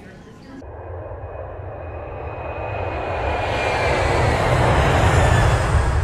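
Jet airliner in flight: a steady rushing noise over a low rumble that swells louder over several seconds, with a faint whine sliding slowly down in pitch.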